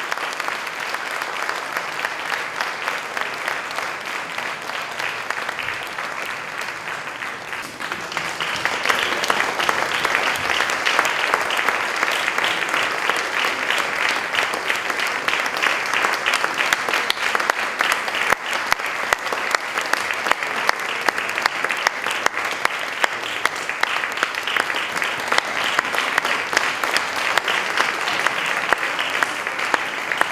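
Audience applauding in a theatre, the applause swelling about eight seconds in and staying strong, as the orchestra waits to begin Act III.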